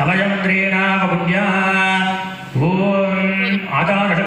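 Hindu priest chanting a mantra on one steady pitch, in two long breath-phrases, the second starting about two and a half seconds in.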